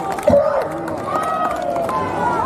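A man speaking into a microphone, his voice amplified over a loudspeaker system, with a brief low thump near the start that is the loudest moment.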